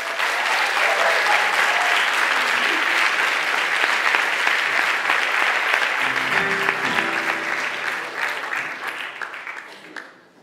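Audience applauding as a song ends, starting suddenly and fading away near the end. A few held instrument notes sound briefly about two-thirds of the way through.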